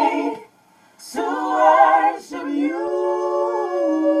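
Small mixed vocal group singing a cappella gospel: a phrase ends, a brief pause, then a new phrase that settles into a long held note, which steps up in pitch and back down near the end.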